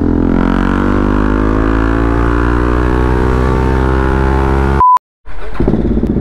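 Motorcycle engine pulling steadily under acceleration, its pitch rising slowly for about five seconds. Near the end there is a short high beep and a moment of silence, then the engine is heard running at a low, steady pitch.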